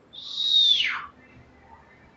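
A single high whistle, held briefly and then gliding steeply down in pitch, about a second long.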